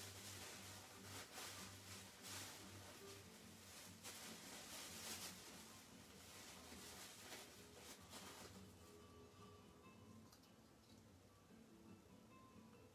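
Near silence: faint room noise with soft rustling for the first eight seconds or so, then faint background music.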